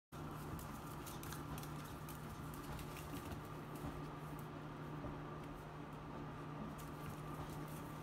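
A small chiweenie's claws pattering and clicking on a tile floor as it spins in circles chasing its tail, over a steady low hum.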